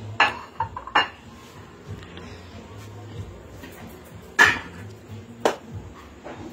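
Aluminium cooking pot and metal ladle clanking as the rice is served and the pot's lid goes on: four sharp metal knocks, the loudest about four and a half seconds in.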